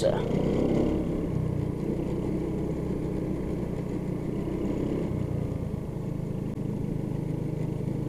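Motor scooter engine running at low riding speed, a steady hum that shifts a little in pitch as the throttle changes.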